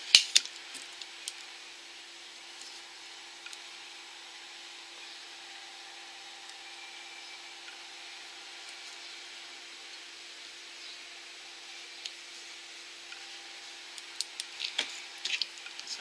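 Quiet room with a steady low hum. A couple of sharp clicks come right at the start and a scatter of small clicks and taps near the end, from nail-stamping tools handled against a metal stamping plate.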